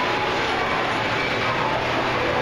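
Steady outdoor amusement-park background noise with faint tones running through it.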